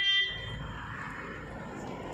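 A single short vehicle horn toot right at the start, lasting under half a second and much louder than the steady background noise that follows.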